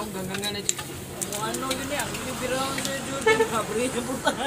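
Several people talking in the background, with a few light clicks and clinks of mugs and utensils being handled.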